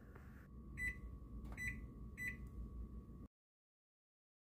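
Microwave oven keypad beeping three times as its buttons are pressed, short single-pitched beeps under a second apart, over a low steady hum. The sound cuts off suddenly a little past three seconds in.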